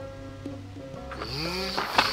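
Background music with a steady bass line; from about a second in, a man makes a rising grunting noise through pursed lips.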